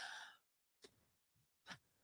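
Near silence: a woman's breathy exhale, like a sigh, fading out in the first moment, then a faint short breath near the end.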